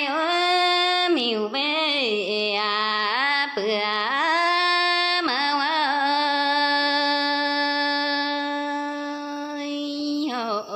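A woman singing a Red Dao (Iu Mien) folk song, unaccompanied. Her voice bends and ornaments the melody for the first half, then holds one long steady note through the second half.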